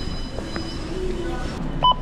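Store background noise, then near the end a short, sharp electronic beep from a self-checkout barcode scanner as a pack of markers is scanned.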